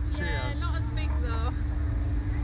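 People's voices talking during the first second and a half, over a steady low rumble and a constant hum.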